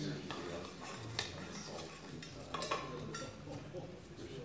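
Low murmur of people talking quietly in a room, with a sharp click about a second in and a light clink with a brief ring near three seconds.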